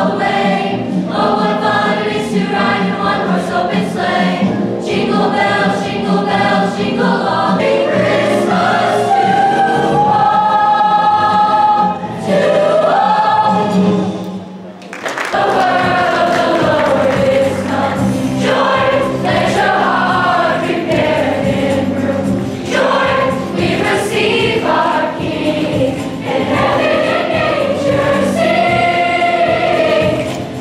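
Mixed boys' and girls' school show choir singing. The sound dips briefly about halfway through, then the choir comes back in.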